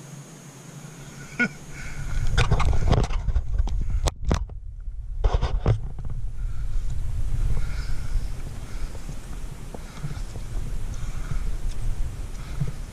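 Footsteps on a dirt track, with a low rumble on the camera microphone from about a second and a half in. A few sharp clicks and knocks from handling the camera pole come in the first half.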